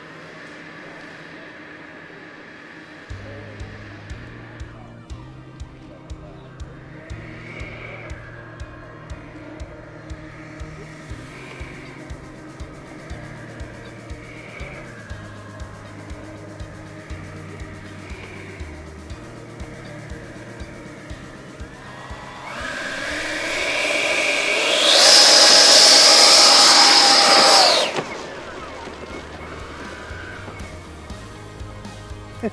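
Background music with a steady beat and bass line, about two beats a second. About 22 seconds in, the four Schubeler electric ducted fans of a scale RC B-58 Hustler spool up over it with a rising whine, run at full power with a loud, steady high whine for about three seconds, then cut off suddenly.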